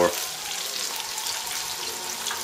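Oil sizzling steadily in a pot on the stove as chicken wing tips deep-fry.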